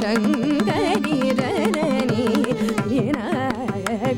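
Carnatic vocal music: a woman singing an ornamented, oscillating melodic line with violin following her, over a steady drone, with brisk mridangam strokes throughout.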